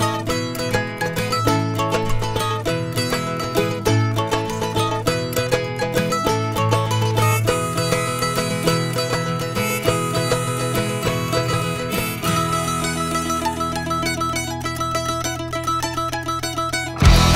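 Instrumental break in a country-punk rock song: a mandolin picks a fast melody over guitar and bass, and the backing changes about halfway through.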